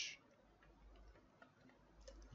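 A few faint computer keyboard keystrokes, soft clicks against near silence.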